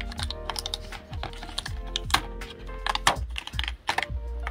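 Cut cardstock being peeled off a sticky Cricut cutting mat: a quick, irregular run of crackling ticks and pops as the paper pulls free of the adhesive.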